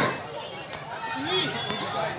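Several people's voices calling and talking, with a few faint sharp pops.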